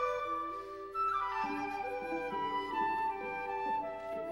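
Live chamber ensemble of Chinese and Western instruments playing contemporary music, with a flute line to the fore. After about a second the flute line descends in steps over held lower notes.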